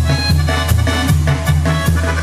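Duranguense band music played live, an instrumental passage with a quick steady drum beat over a bass line and held keyboard notes.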